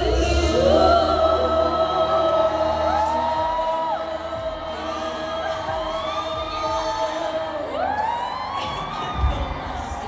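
Live concert sound heard from within the audience: a woman singing held, gliding notes into a microphone over music, with the crowd cheering underneath.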